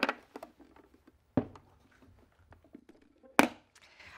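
A few sharp knocks and clunks from a plastic medical monitor's housing being handled, turned upright and set down on a tabletop, the loudest one near the end.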